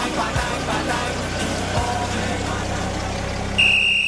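Car engine running with music playing over it. Near the end a steady high beep sounds for under a second.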